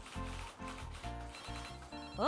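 Background music with a steady beat, joined past the middle by a telephone ringing in a quick, high-pitched trill.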